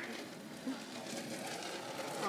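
Skateboard wheels rolling on asphalt, a faint even rolling noise that grows slightly louder as the board comes closer.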